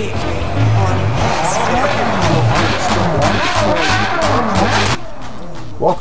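Intro soundtrack: music mixed with race-car engines revving and tyres squealing. It cuts off suddenly about five seconds in.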